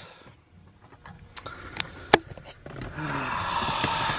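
Quiet handling noises: a few sharp clicks in the middle, then a rustling noise near the end.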